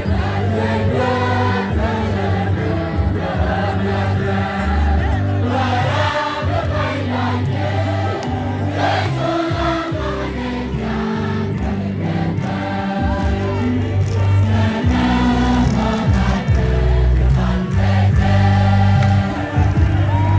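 Choir of voices singing gospel music over a heavy bass line that steps from note to note, loud and continuous.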